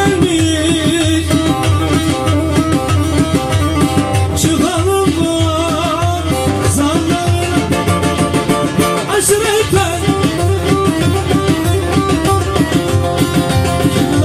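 Live Turkish folk music: a bağlama (saz) and a Korg Pa3X keyboard playing a melody over a steady drum beat, with a man singing.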